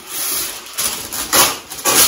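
A sheet of wax paper being pulled off the roll in its box, rustling and crinkling, with two louder rasps near the end.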